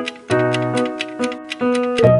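Countdown timer music: a steady clock-like ticking, about four ticks a second, over held musical notes, running down the guessing time.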